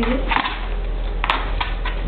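A dog scrambling up from lying on its back to standing in its cushioned pet bed: short rustles of fabric and paws, then a sharp tap a little over a second in and a couple of lighter ticks.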